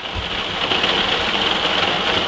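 Heavy rain falling on a motorhome's roof, heard from inside as a steady, even hiss.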